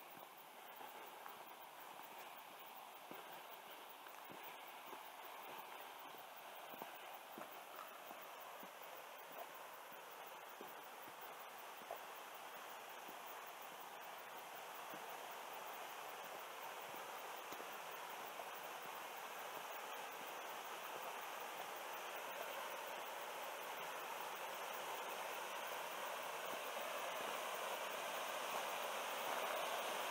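Rushing water of a small creek waterfall cascading over rock ledges, a steady hiss that grows gradually louder as it is approached. Faint scattered footsteps on a leaf-covered dirt path are heard in the first half.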